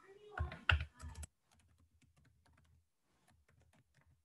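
Typing on a computer keyboard: a few louder keystrokes in the first second, then a run of faint, quick key clicks.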